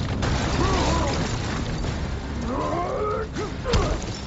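Action-film crash sound effects: a heavy body ploughing through a street, with a continuous rumble of breaking pavement and debris and wavering screeching tones over it, and a sharp hit near the end.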